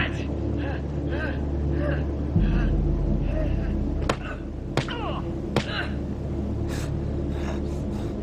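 A steady low rumble in a film soundtrack that deepens a little before the middle, with faint short repeated sounds above it and three sharp cracks a little after the middle.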